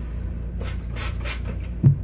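Three quick hissing squirts of water added to a shaving-soap lathering bowl, followed near the end by a single sharp knock.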